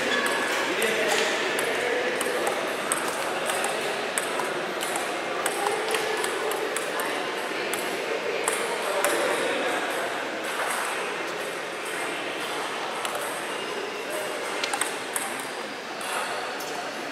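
Table tennis ball clicking off bats and table in quick, irregular strokes throughout, over a background murmur of voices in the hall.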